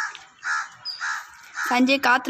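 A crow cawing: a few short calls about half a second apart.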